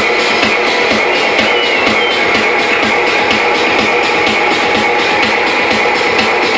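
Techno played loud over a club sound system, with a steady driving beat and sustained synth tones held over it.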